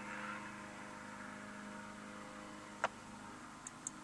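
Faint steady hum inside a 2007 Honda CR-V's cabin with the ignition switched on and the engine off, broken by one short, sharp click a little before three seconds in.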